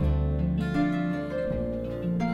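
Acoustic guitar played fingerstyle: a melody of plucked notes over low bass notes, with a new bass note struck about one and a half seconds in.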